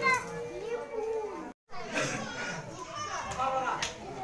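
A crowd of children chattering and calling out all at once, with adult voices mixed in. The sound cuts out completely for a moment about a second and a half in, then the chatter resumes.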